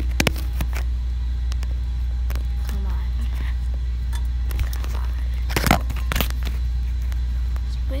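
Handling noise from a phone's microphone rubbed and bumped against skin and clothing: scattered clicks and knocks, with a louder cluster about five and a half seconds in, over a steady low hum.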